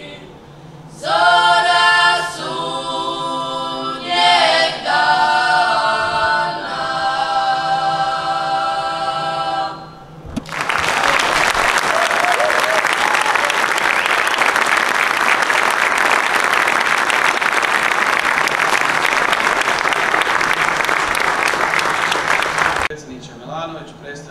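A children's klapa, a traditional Dalmatian a cappella group of boys and girls, sings the last phrases of a song in long held chords. The song ends about ten seconds in. An audience then applauds steadily for about twelve seconds.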